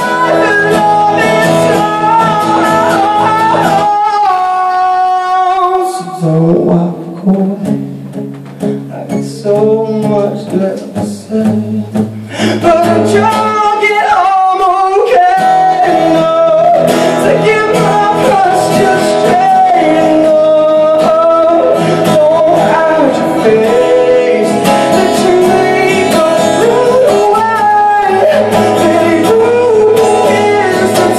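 A man singing live over his own acoustic guitar. About six seconds in the music drops to a quieter, sparser guitar passage for several seconds, then the voice and guitar come back in at full level.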